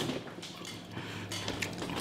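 Faint handling noises at a table, soft clicks of fingers, food and tableware, over a low steady hum.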